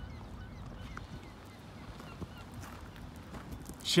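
Quiet outdoor background: a low rumble with a few faint, short bird chirps.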